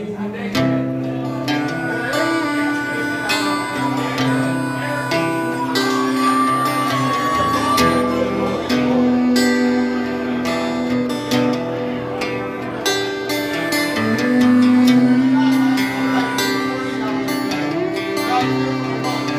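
Live instrumental break of a country song. An acoustic guitar strums steadily under long held melody notes from harmonica and fiddle.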